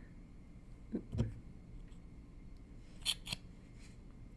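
Small handling sounds from a liquid highlighter tube and its doe-foot wand: two soft knocks about a second in, then two sharp clicks near the end, as the wand goes back into the tube for more product.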